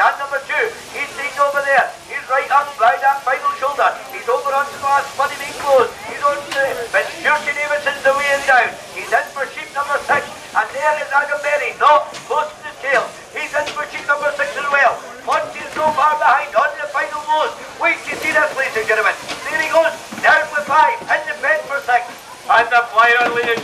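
Continuous, fast speech: the sheep-shearing commentator calling the race without a pause.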